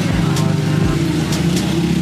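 A motor vehicle's engine running steadily, a low hum, amid street noise.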